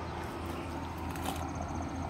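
Steady low rumble of highway traffic, with a faint high thin tone joining about two-thirds of the way in.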